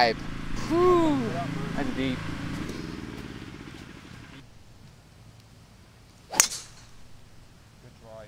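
A golf club striking a ball off the tee about six and a half seconds in: one sharp crack. Before it, a drawn-out rising-and-falling voice call over outdoor background that drops away suddenly near the middle.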